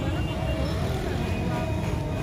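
Busy street ambience: background chatter of people over a steady low rumble of traffic.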